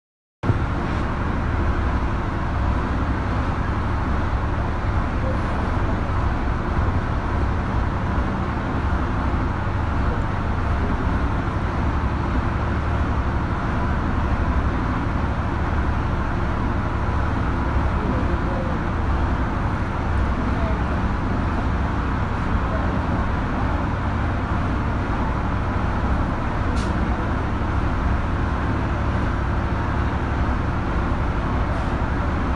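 Steady, loud background rumble with no clear events in it.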